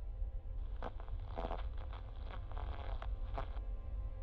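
Low steady rumble under a faint sustained drone; about half a second in, crackling radio static comes in for about three seconds, then cuts off.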